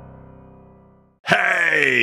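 Ambient intro music fading out, then after a brief silence a man's voice comes in loud with a long, drawn-out sound whose pitch slowly falls, the start of a spoken greeting.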